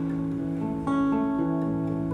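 Acoustic guitar playing sustained, ringing chords between sung lines, with a new chord strummed about a second in.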